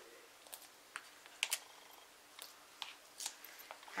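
Faint, scattered small clicks and ticks of foam adhesive dimensionals being peeled off their backing sheet and pressed onto card stock, about seven in all.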